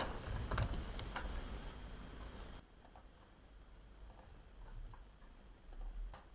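Faint, scattered computer keyboard and mouse clicks, a few in the first second and a few more spread through the rest, over a light hiss that drops away about two and a half seconds in.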